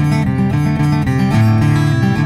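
Background music led by acoustic guitar, playing a steady run of notes.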